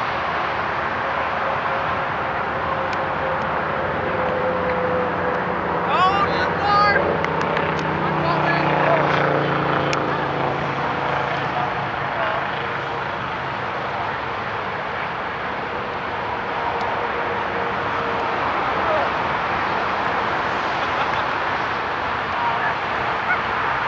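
Steady outdoor noise with players' voices calling out about six seconds in, and an engine passing in the background, its pitch slowly falling.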